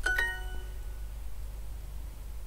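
Duolingo's correct-answer chime: a quick two-note ding of bright ringing tones at the very start, fading within about half a second, signalling that the spoken answer was accepted. A steady low hum sits underneath.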